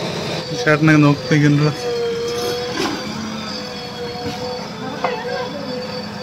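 JCB backhoe loader's diesel engine running with a steady hum as the machine works the earth. A person's voice is heard briefly near the start.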